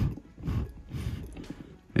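A person blowing air in a couple of soft, breathy puffs, to drive a tarantula back into its enclosure.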